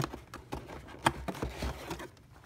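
Cardboard boxes being handled: a small inner box pulled out of a larger retail box, with a string of light taps, knocks and scrapes, the sharpest right at the start and about a second in.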